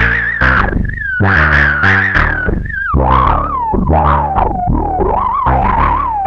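Atomosynth Asterion analog synthesizer playing a fast, repeating sequenced bass line through two filters in series, with no effects. Each note has a resonant squelch that falls as the envelope generators sweep the filter cutoff. About halfway through, the resonant peak shifts lower as the knobs are turned.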